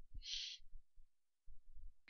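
Faint, irregular soft thumps of fingertips tapping on a phone's touchscreen keyboard, with one short hiss about a quarter of a second in.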